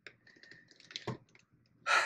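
Light plastic clicks and rustling as hands handle intercom cables and connectors on a motorcycle helmet, with a sharper tap about a second in.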